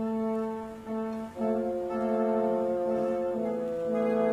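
Opera orchestra playing slow, sustained chords with no singing; the chord briefly dips and a new, fuller chord comes in about a second and a half in.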